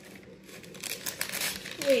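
Clear plastic packaging crinkling as it is handled, a quick run of crackles through the second half.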